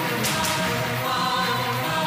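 Dramatic background score of sustained choir-like voices over steady held notes, with a brief high swish about a quarter of a second in.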